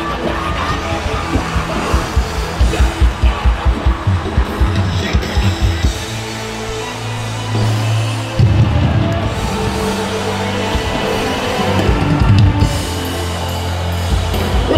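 Loud worship-band music with a drum kit: a fast run of drum beats over the first few seconds, then held bass notes that change about eight seconds in.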